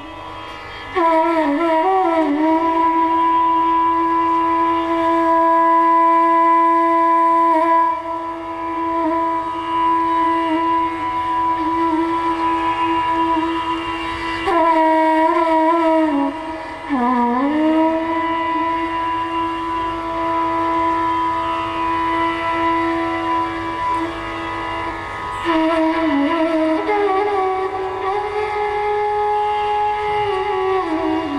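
Bansuri bamboo flute playing long sustained notes of Raag Yaman Kalyan over a tanpura drone. Each held note is approached through sliding, wavering ornaments, with a deep bend about halfway through and a step up to a higher note near the end.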